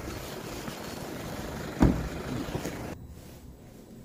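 Street noise of passing traffic with wind rushing on the microphone as a steady hiss, and a single thump a little under two seconds in. It cuts abruptly to a much quieter room about three seconds in.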